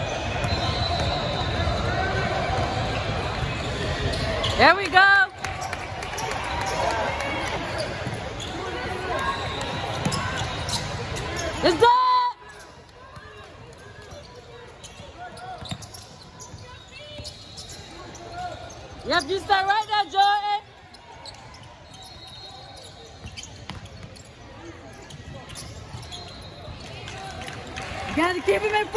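Basketball game in a large gym: a ball dribbling on the hardwood court amid voices of players and spectators, with a few short, loud squeals. The sound drops abruptly quieter about twelve seconds in.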